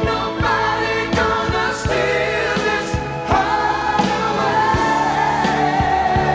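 Live rock band playing a slow rock song with a male lead vocal, a steady drum beat about once a second under the singing.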